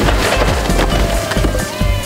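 Brick wall pulled down by an excavator collapsing: a quick run of cracks and crashes as bricks and wooden framing break and fall, over the low rumble of machinery.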